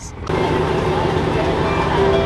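Car engines idling with a steady hum, starting suddenly about a third of a second in.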